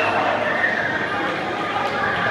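Indistinct chatter of many voices from an audience and ringside crowd in a large hall.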